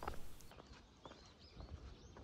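Faint outdoor ambience: a few soft footsteps on a path, with a few short, faint bird chirps.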